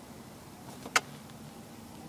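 A single sharp click about a second in, preceded by a couple of faint ticks, over a steady low hum.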